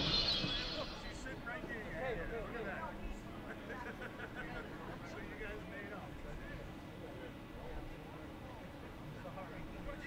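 Faint chatter of spectators in a baseball crowd, with a louder sound fading away in the first second.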